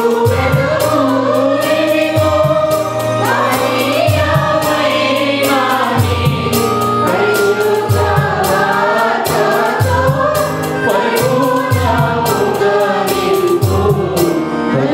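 Small mixed choir singing a Telugu Christian worship song into microphones, accompanied by an electronic keyboard with a steady beat and pulsing bass.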